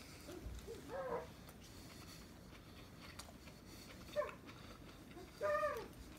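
A few short, high-pitched calls, each rising then falling, from a small animal or a young child; the loudest comes near the end.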